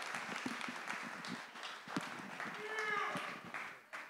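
Congregation clapping in welcome, with a few voices calling out, dying away near the end.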